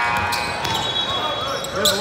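Basketball game on a hardwood gym floor: the ball bouncing and sneakers squeaking, with high squeaks held in the first second, and voices calling out near the end.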